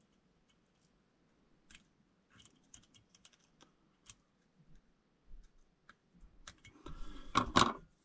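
Faint scattered clicks of fly-tying scissors and fingers working at the vise, then a louder rustle with two sharp clicks near the end.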